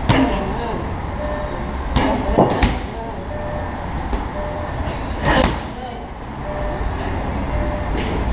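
Muay Thai clinch work: sharp slapping thuds of strikes landing on a body, one at the start, three in quick succession about two seconds in and one more about five seconds in. Underneath runs a steady low rumble of traffic.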